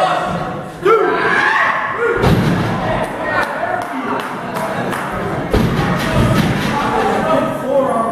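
Wrestlers' bodies landing on the wrestling ring's canvas: two heavy thuds, one about two seconds in and another past five seconds, amid voices from the crowd.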